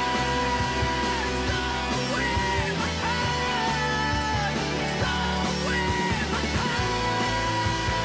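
Rock music with electric guitar over a band backing. A held melody line bends up and down in pitch, sustaining and then sliding several times.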